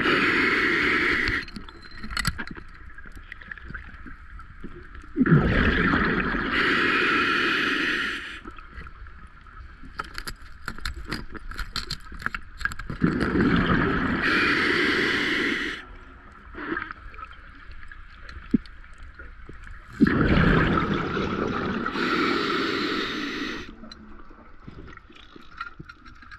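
Scuba diver breathing through a regulator, four times: each breath is a rumble of exhaled bubbles followed by the hiss of the inhale, about every seven seconds. A run of rapid faint clicks fills one of the gaps.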